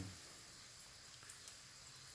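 Faint room tone: a steady low hiss with a few tiny ticks, no distinct sound.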